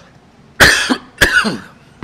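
A man coughing twice into his fist, close to a microphone, the two loud coughs in quick succession.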